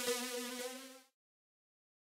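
The last held electronic synth note of an EBM / dark electro track, a steady buzzy tone fading out and stopping about a second in, then silence.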